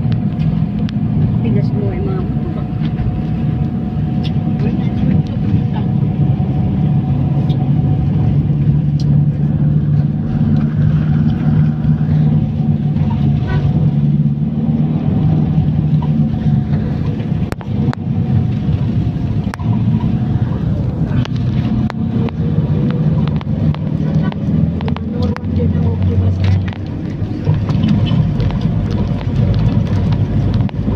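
A road vehicle driving at a steady speed, heard from inside: a continuous low engine hum and road noise, with scattered clicks and rattles.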